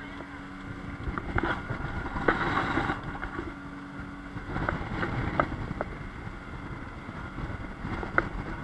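Outboard-powered speedboat running at speed: a steady engine drone under wind and rushing water, with a few sharp knocks as the hull hits the waves.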